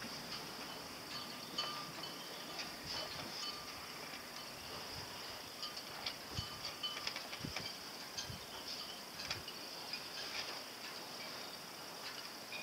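Faint metallic tinkling and light clicking of sailing-dinghy rigging: halyards and fittings tapping against masts, over a steady high hiss, with a few soft low thumps in the middle.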